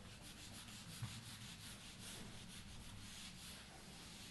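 Whiteboard eraser wiping marker off a whiteboard in quick, repeated back-and-forth strokes, faint.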